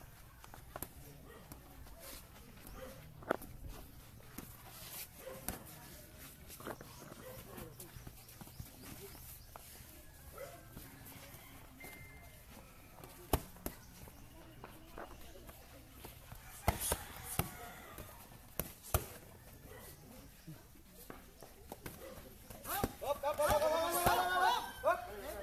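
Boxing gloves landing punches during an outdoor sparring bout: a handful of sharp, widely spaced smacks over a low background, with onlookers' voices rising near the end.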